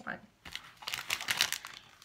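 Crinkly plastic candy packaging rustling and crackling as it is picked up and handled, starting about half a second in and running until just before the end.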